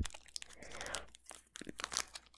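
Faint crinkling and ticking of a foil Pokémon trading-card booster pack being handled, a few light crackles spread through the moment.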